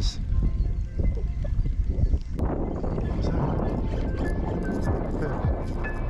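Wind buffeting an unshielded GoPro microphone: a loud, rough rumble that turns harsher and hissier about halfway through. Background music plays faintly underneath.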